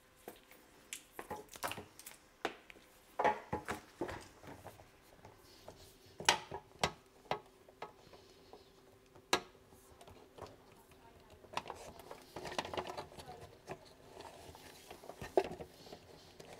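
Scattered clicks and knocks of a flexible meter tail being handled and fed through the gland into a plastic consumer unit enclosure, with the loudest knocks about six and nine seconds in.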